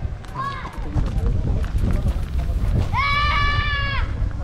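A small child's voice: a short call about half a second in, then a long, high-pitched shout held at one pitch for about a second near the end.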